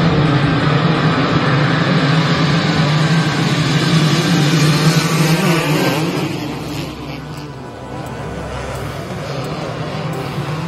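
A pack of motocross dirt bikes with their engines at full throttle, many engines blended into one loud, steady sound. About six seconds in it drops to a quieter, thinner engine sound.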